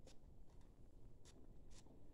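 Near silence with two faint short taps, a little over a second in and near the end: small plastic paint cups being picked up and moved.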